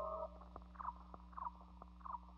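Electric guitar through effects pedals in a sparse passage: a held chord cuts off, then short falling blips repeat about every two-thirds of a second, with faint ticks, over a steady amplifier hum.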